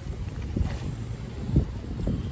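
Heavily loaded wheeled canvas cart being pushed and jolted over asphalt, its wheel caught at a storm-drain grate: a low rumble with a thump about half a second in and a louder one near the end. Wind rumbles on the microphone.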